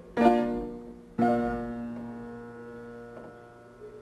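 Piano music: two chords struck about a second apart, the second held and left to ring and fade.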